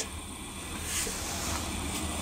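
Low, steady background hum with no distinct sound events.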